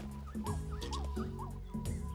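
A few short, gliding bird-like calls from a cartoon bird sound effect, over soft background music with held low notes.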